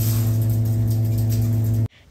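Steady electric machinery hum with a strong low drone and several steady higher tones, cut off abruptly near the end.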